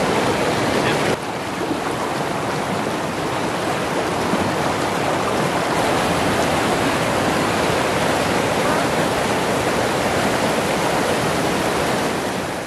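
River rapids rushing and churning over rocks: a loud, steady roar of white water.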